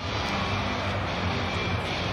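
Steady background noise of an arena during a basketball game, a constant rumble with a low hum underneath.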